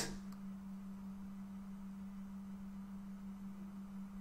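A faint, steady low hum on a single pitch, with nothing else over it.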